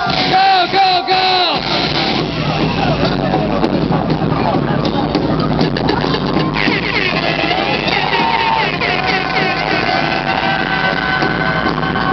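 Loud club music playing with a crowd shouting and cheering over it, and a few short held tones in the first second and a half.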